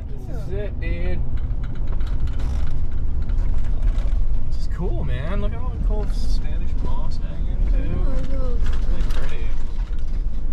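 Converted school bus driving, heard from inside the cab: a steady low engine and road rumble with the cab's fittings rattling and creaking.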